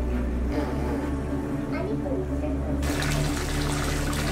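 Soft background music of held low notes. About three seconds in, a steady hiss of water moving in the birth pool joins it.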